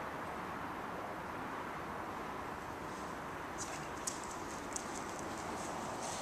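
A dog's claws ticking on a bare concrete floor as it moves off, a scatter of sharp clicks starting a little past halfway, over a steady background hiss.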